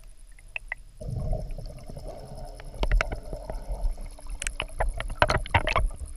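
A boat's motor running on the water, coming in about a second in as a steady low rumble, with many sharp knocks and clicks on top.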